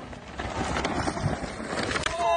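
Steady rushing noise peppered with small crackles: wind on the microphone mixed with a mountain bike's tyres rolling and skidding over loose dirt.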